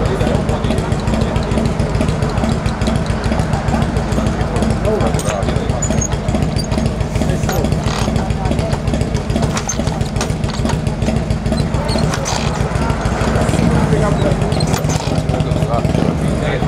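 Chopper motorcycle engine running with a fast, uneven low pulse, over a crowd's voices.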